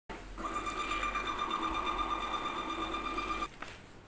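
Gprinter GP-1224T thermal barcode label printer printing a label, its feed motor running with a steady whine that starts about half a second in and stops suddenly about three and a half seconds in.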